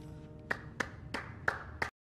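The last held note of a pop song fades out under five sharp hand claps, about three a second. The audio then cuts off to silence.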